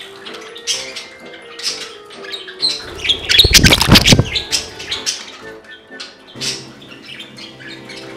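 Budgerigars chirping over background music. About three seconds in, a loud flurry of wingbeats lasting about a second and a half, as one budgie takes off from the perch.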